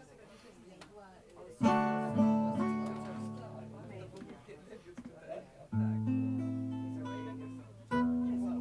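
Acoustic guitar chords, each strummed once and left to ring and slowly die away. After a quiet start, two come close together about one and a half seconds in, and another pair near six seconds in.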